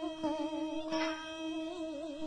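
Cải lương instrumental accompaniment between sung lines: a held, slightly wavering melody tone with plucked string notes struck about a quarter second and a second in.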